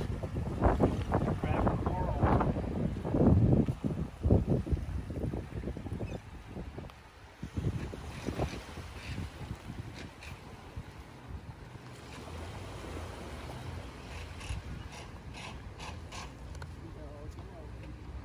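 Wind buffeting the microphone on a beach, gusty and louder for the first few seconds, then settling into a steadier, quieter rush with the wash of small waves.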